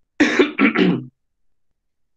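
A man clearing his throat, a short voiced 'ahem' of about a second made of three quick pulses.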